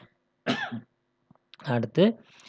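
A man briefly clears his throat about half a second in, then starts speaking again near the end.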